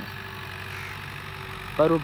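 Tractor engine running steadily in a low, even drone. A man's voice breaks in near the end.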